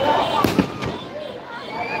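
Fireworks going off: a sharp bang about half a second in and a lighter crack just after, over crowd chatter.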